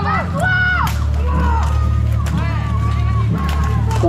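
Voices shouting, one call held briefly about half a second in, over a steady low hum. Several sharp knocks of weapons striking armour and shields in full-contact medieval combat cut through.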